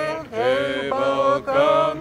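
A woman's voice through a handheld megaphone, chanting in long, drawn-out phrases with brief breaks between them.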